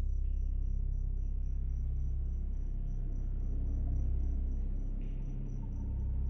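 Sound-design ambience: a steady low drone under a thin, high chirp pulsing evenly about four times a second, which cuts off just before the end.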